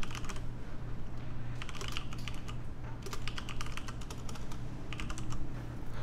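Typing on a computer keyboard: four short bursts of rapid key clicks over a low steady hum.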